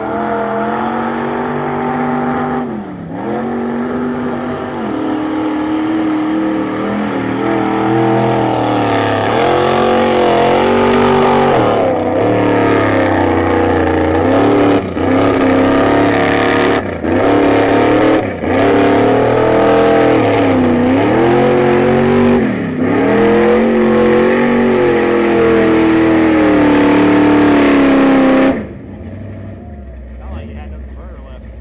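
A lifted mud truck's engine revving hard at high rpm as it churns through deep mud, its pitch repeatedly sagging under load and climbing again, with brief drops where the throttle lifts. The engine sound cuts off sharply near the end.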